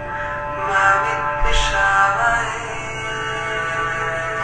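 Devotional music with a voice chanting a Vedic mantra over sustained, held tones. A low thud sounds about one and a half seconds in.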